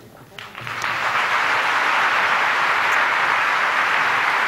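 Large theatre audience applauding, the clapping swelling up within the first second and then holding steady.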